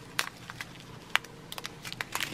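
A clear plastic bag of square diamond-painting drills being handled: a few light crinkles and clicks, two sharper ones about a fifth of a second in and just after a second.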